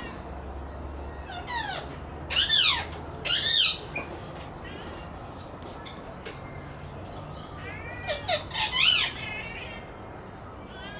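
Australian magpies calling in two short bouts of loud, arching squawky notes, one about two to four seconds in and another near the nine-second mark.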